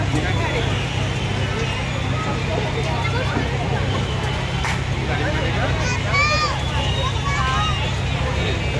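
Busy fairground crowd chatter over a steady low hum, with a few high children's calls about six seconds in.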